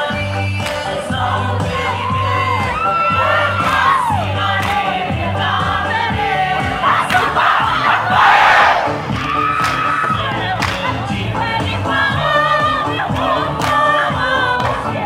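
A group of women chanting and singing together for a traditional Micronesian dance. About seven to nine seconds in, the group breaks into a louder shout.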